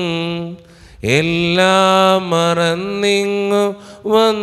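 A man chanting a liturgical hymn unaccompanied into a microphone, holding long, steady notes; he breaks for breath about half a second in, scoops up into the next phrase about a second in, and pauses briefly again near the end.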